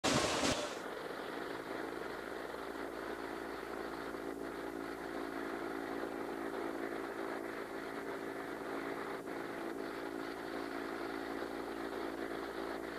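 Blister packaging line running: a steady machine hum with a few faint ticks scattered through it. It opens with a brief loud burst of noise.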